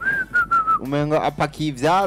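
A person whistling a short phrase of about four notes that drift slightly downward in pitch, lasting under a second, then a man talking.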